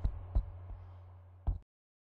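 A faint steady low electrical hum, broken by three soft low thumps: one at the start, a louder one about half a second in, and one past the middle. The sound then cuts off suddenly.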